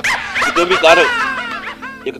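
A run of high yelping calls, each sliding down in pitch, over background music.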